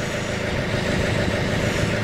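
John Deere compact backhoe's diesel engine idling steadily.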